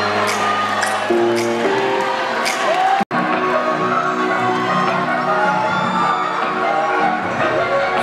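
Music with long held chords and a few sliding pitched lines. The sound cuts out for an instant about three seconds in.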